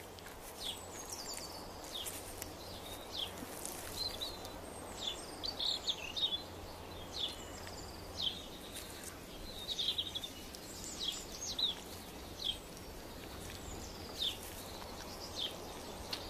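Natural outdoor ambience: small birds chirping in short, falling calls scattered throughout, over a low, steady background hiss.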